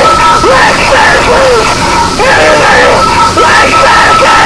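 Power-electronics noise music: a loud, dense wall of distorted noise with a steady high feedback whine that drops out about half a second in and comes back near the end, under heavily distorted yelled vocals swooping up and down in pitch.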